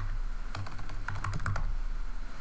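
Computer keyboard typing: a quick run of keystrokes as a short word is typed.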